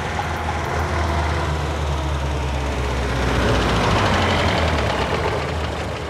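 Car engine running at low speed, a steady low hum that grows louder a few seconds in and then eases off.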